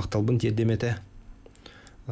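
A man speaking into a studio microphone for about the first second, then a pause with a few faint, short clicks.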